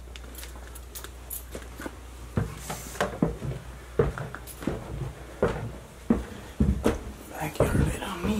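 Footsteps climbing wooden basement stairs: a run of thuds, roughly two a second, starting a couple of seconds in, over a low steady hum.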